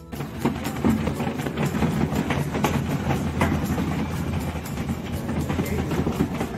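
A loaded wheeled cart rolling along a hallway floor, rattling steadily with many quick clattering knocks.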